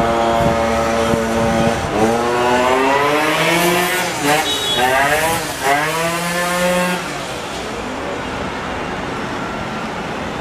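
Car engines revving hard on a street, the pitch climbing and falling again several times for about seven seconds. After that the sound drops to steady traffic noise.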